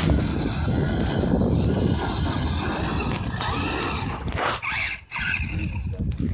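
Traxxas E-Maxx electric RC monster truck driving hard on sand: the motors whine up and down under a heavy low rumble from the tires digging in, with a brief drop in sound about five seconds in.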